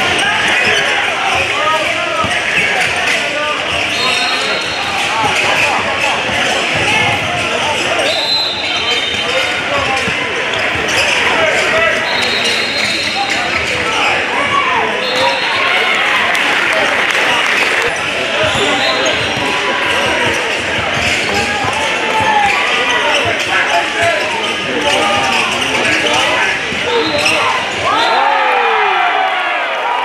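Basketball game on a hardwood gym court: the ball bouncing, sneakers squeaking several times, and players and spectators calling out and talking over one another.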